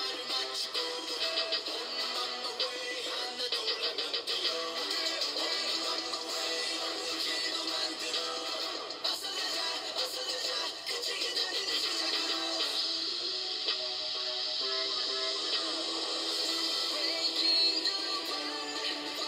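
K-pop song with boy-group vocals playing from a music video, its low end cut away so it sounds thin.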